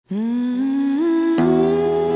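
Intro music: a sustained hummed-sounding melody that steps up in pitch twice, joined about one and a half seconds in by fuller held chords with a bass underneath.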